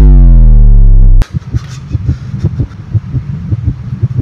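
An edited-in sound effect so loud it is distorted: a buzzy tone that falls steadily in pitch for about a second and cuts off abruptly. It gives way to bass-heavy music with a quick, steady beat.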